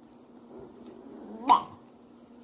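A single short, sharp yelp-like vocal sound from a young child about one and a half seconds in, over a quiet room with a low steady hum.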